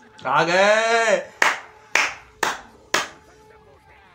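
A drawn-out shout from a man's voice, then four sharp hand claps about half a second apart.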